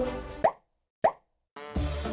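Two short rising blips, about 0.6 s apart, each set in dead silence: edited cartoon-style sound effects. Background music with a beat comes back in near the end.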